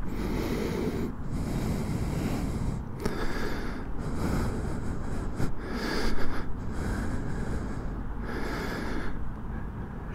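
Wind buffeting the camera microphone: a rough rushing noise that rises and falls in gusts, with no engine note.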